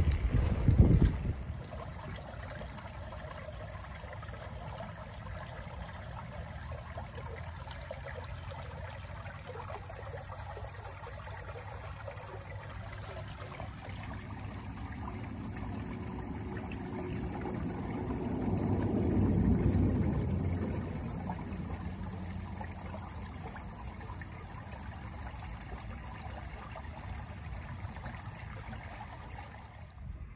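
Wind buffeting the microphone in the first second or so, then a steady rush of shallow water trickling through a reed-lined marsh creek. A low rumble swells and fades about two-thirds of the way through.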